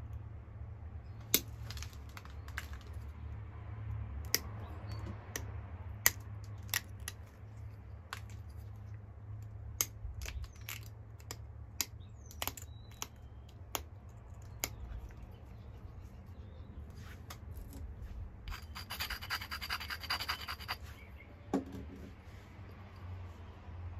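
Pressure flaking a Flint Ridge flint biface with an antler flaker against a leather pad: scattered sharp clicks as flakes snap off the edge, about a dozen in all. Near the end comes a short run of rapid scratching on the stone's edge.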